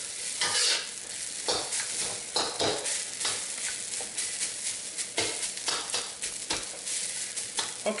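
Metal wok spatula scraping and tossing rice around a carbon steel wok in irregular strokes, with a steady sizzle of the rice frying in oil underneath.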